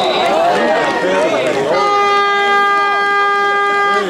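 Several voices shouting and cheering over one another, then, under two seconds in, a horn sounds one long steady note that holds to the end.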